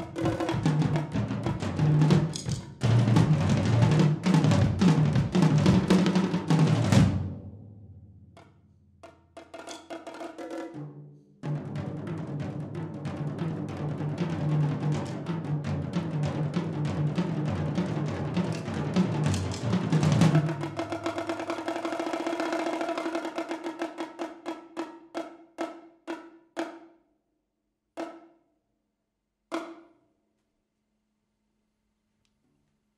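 Solo percussion on a multi-drum setup of bongos and tom-toms, played with sticks. Fast runs of strokes stop short about seven seconds in, followed by a few quieter strokes. A second long rapid passage then starts and thins into slowing single strikes, with two last isolated hits near the end.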